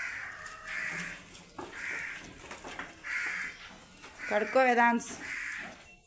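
A bird's harsh, repeated calls, about once a second, six in all.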